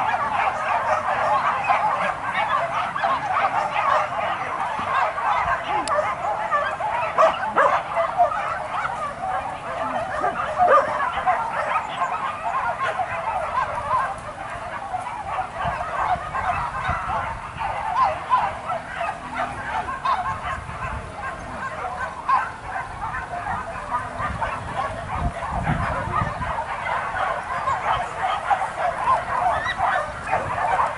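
A pack of hunting dogs barking and yelping over one another in a dense, unbroken chorus, the dogs giving tongue as they chase wild boar.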